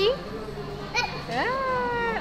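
Speech: a woman's voice ends the question 'oishii?' ('is it delicious?'). About a second and a half in, a toddler's high voice answers with a long drawn-out sound that rises and then holds its pitch.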